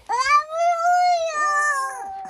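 A young child's long, high-pitched squeal that rises and then falls, held for nearly two seconds during rough-and-tumble play.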